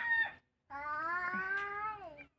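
An animal's drawn-out calls: the tail of one long call ends just under half a second in, and after a short pause a second call of about a second and a half rises slightly in pitch and drops off at the end.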